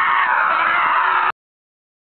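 A young man screaming while running: one long, high scream that cuts off suddenly just over a second in.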